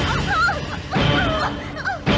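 High, whimpering cries in quick rising and falling glides, over background film music.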